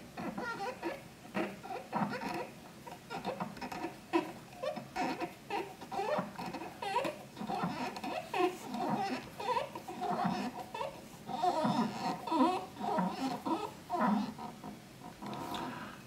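Indistinct voice sounds in the background, chattering on and off with no clear words.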